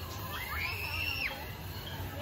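A person's short, high-pitched shriek that rises, holds and drops away within about a second, starting half a second in, over a steady low hum.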